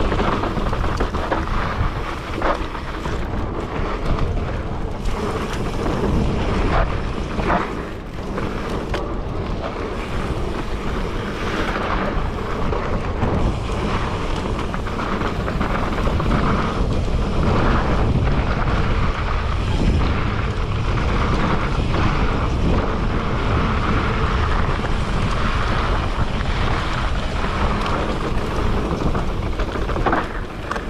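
Wind buffeting the microphone of a camera on a mountain bike riding fast down a dirt trail, a loud steady rush, with rumble and occasional sharp knocks and rattles from the bike going over rough ground.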